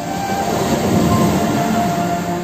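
Sea waves washing against a rocky shore: a surge of wash swells about half a second in and eases near the end, under soft held music notes.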